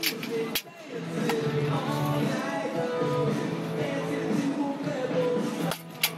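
Guitar-led background music plays throughout. Sharp cracks at the start, about half a second later and again near the end fit a baseball bat hitting balls off a batting tee.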